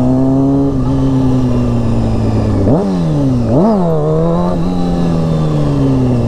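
Honda CBR sport bike's engine pulling along at road speed. Its pitch eases up and holds, then twice in quick succession, about three seconds in, it dips and surges sharply before settling back to a steady cruise.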